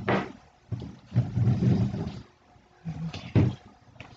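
A person's wordless vocal sounds: a sharp burst of breath at the start, then a low drawn-out vocal sound about a second in, and short voiced sounds again about three seconds in.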